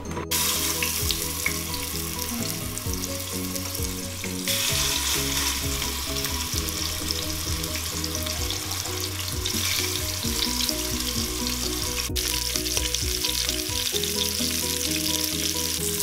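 Beef short ribs searing in hot oil in an Instant Pot's stainless steel inner pot on the high sauté setting, a steady sizzle that grows louder about four and a half seconds in. Soft background music runs underneath.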